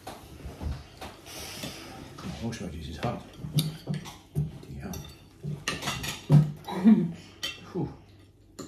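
Knife and fork clinking and scraping on china dinner plates as food is cut and eaten, in irregular short strokes, with a few brief voice sounds mixed in.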